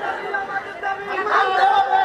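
A crowd of voices, many people talking and calling out at once, louder again near the end.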